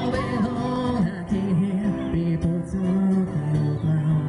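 A man singing live while strumming an acoustic guitar, amplified through a stage sound system. His voice holds long, low notes, with the steepest slides in pitch in the first half.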